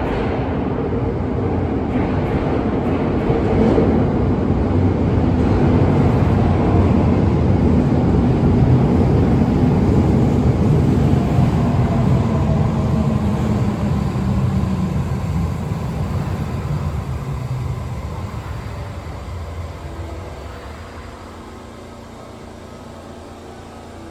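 Electric commuter train running through a station platform without stopping. Its running noise builds to a peak about eight to ten seconds in, then fades as the last car leaves. A motor whine falls in pitch during the fade.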